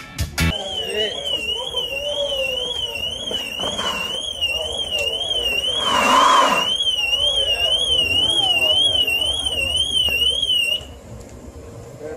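An electronic alarm siren warbling rapidly up and down in a high tone, cutting off suddenly near the end. There is a brief loud noisy burst about halfway through, and faint voices beneath.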